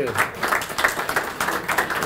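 An audience applauding: many hands clapping in a dense, even patter.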